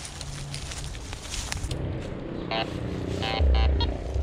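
Metal detector giving several short, steady beeps in the second half as its coil is swept over the ground, with rustling of brush before them. A low rumble of wind or handling on the microphone near the end.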